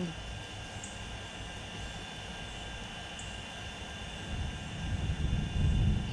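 A low, distant rumble that swells louder about four to five seconds in, over faint steady high-pitched tones.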